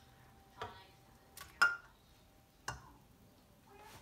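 A few light clicks and knocks over a quiet room as an egg is tipped from a small plastic cup into a stainless steel stand-mixer bowl; the sharpest comes about one and a half seconds in and rings briefly.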